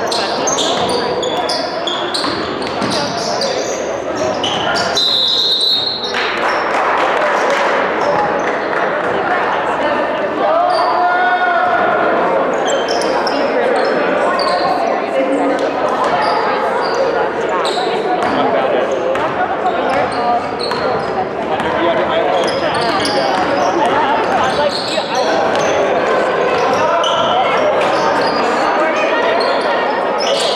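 Basketballs bouncing on a hardwood gym floor, many irregular knocks, under a steady hubbub of voices echoing in the gym. A brief high tone sounds about five seconds in.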